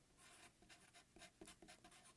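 Very faint strokes of a felt-tip marker writing on paper, a few short scratches in the second half.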